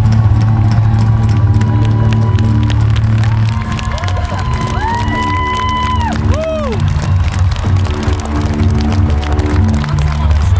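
Live rock band on stage holding a loud, low droning chord that drops away about three and a half seconds in. A few held notes that bend up and down follow in the middle, over crowd cheering.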